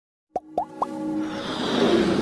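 Animated logo intro sound effects: three quick plops about a quarter second apart, each sliding up in pitch, then a swelling riser with held tones that grows louder.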